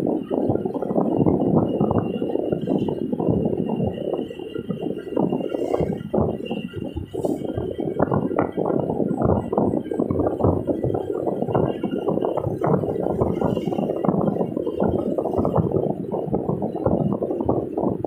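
Cabin noise of a moving car: a continuous rumble from the road and running gear, with rapid small rattles picked up by a dashboard-mounted camera.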